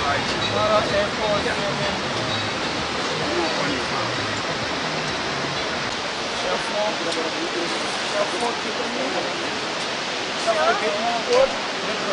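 Steady roar of rushing whitewater, even and unbroken, with indistinct voices talking over it that grow louder near the end.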